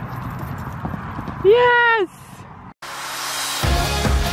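A pony's hoofbeats on arena sand. About a second and a half in comes a single loud, drawn-out call lasting half a second, rising and falling in pitch. After a brief cut-out, background music with a steady beat starts near the end.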